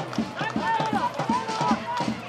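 Football supporters chanting and singing together over a steady drum beat.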